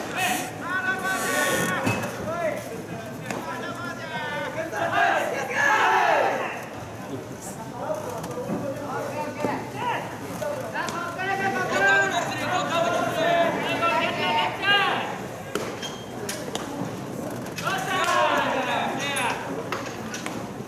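Several people's voices calling out and talking through most of the stretch, with a couple of sharp knocks near the start.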